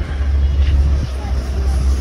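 Busy city street ambience: a heavy, steady low rumble of road traffic with faint voices of passers-by.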